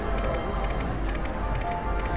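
Video slot machine playing its electronic reel-spin music and tones while the reels spin, with a held tone in the second half, over a steady wash of casino crowd noise.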